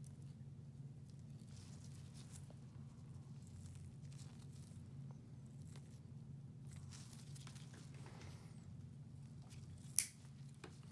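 Faint scraping and light clicks of steel nail instruments working thickened fungal toenail and skin debris, over a steady low room hum; a sharp click comes at the very end.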